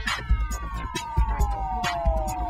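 Electronic music with a beat. Several synth tones glide slowly downward in pitch, like a falling siren.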